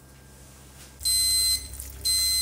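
Digital kitchen probe thermometer's alarm beeping with a high electronic tone: one half-second beep about a second in, and the next starting at the end, about once a second. It signals that the sugar syrup has reached the set 108 °C.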